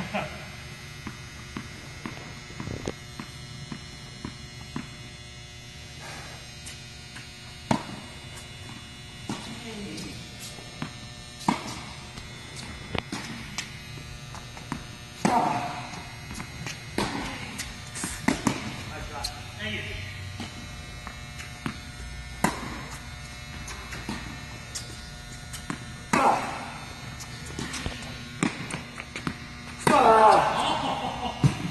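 Tennis balls struck by rackets and bouncing on an indoor court: sharp, irregular pops every few seconds. A steady hum runs underneath.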